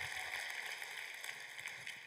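Audience applause in a large hall, a steady patter of many hands clapping that slowly dies away.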